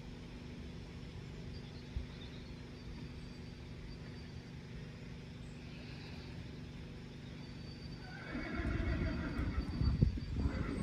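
A horse whinnying loudly near the end, about eight seconds in, over a steady low background rumble.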